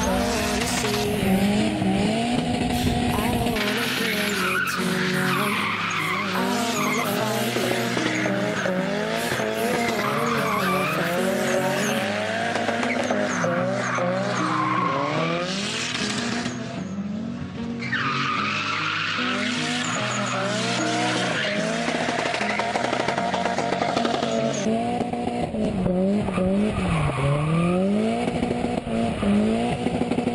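Nissan S14 Silvia's SR20DET turbo four-cylinder revving up and down over and over while drifting, with tyres squealing and skidding. The sound drops briefly a little past the middle.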